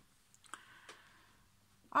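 Faint handling sounds of a crochet hook working yarn, with two light clicks about half a second apart.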